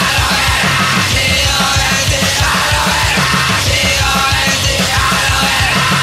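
Punk rock song with shouted vocals over distorted guitars and a fast, steady drumbeat.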